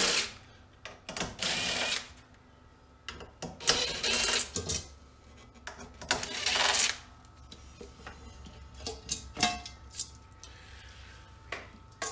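Cordless brushless drill-driver with a T20 Torx bit backing out the inverter cover screws: four short runs of the motor, each about a second long, spaced a second or two apart. After the last run come a few light clicks and knocks as the loosened cover is handled.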